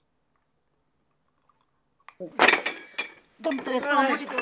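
China and cutlery clattering on a breakfast bed tray as the tray is knocked and the food spilled, together with a woman's distressed shout of "pelo amor de Deus", starting about two seconds in after near silence.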